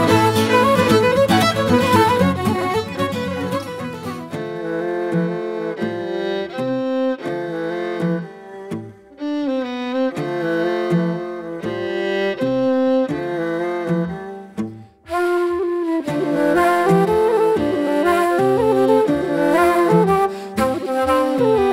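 Irish traditional instrumental music. A fiddle-led ensemble plays, then thins to a slower, sparser passage of held notes. After an abrupt break about 15 s in, a livelier tune starts with a wooden Irish flute to the fore.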